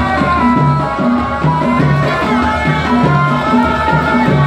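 Ardah, the Gulf sword-dance music: drums beating a repeating rhythm with a melody held over it.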